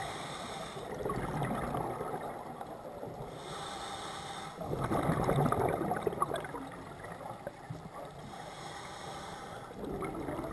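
Scuba regulator breathing heard underwater: a hissing inhale through the demand valve three times, about every four to five seconds, each followed by a gurgling rush of exhaled bubbles, the loudest about halfway through.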